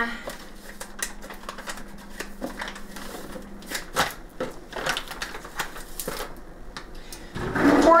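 Light, irregular clicks and taps of kitchen utensils and plastic containers being handled while measuring dry ingredients, over a faint steady hum that stops about four seconds in.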